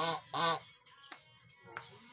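Domestic goose honking twice in quick succession, two short loud calls right at the start.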